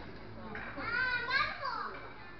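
A child's high-pitched voice in a restaurant dining room, calling out for a little over a second about half a second in, over general room chatter.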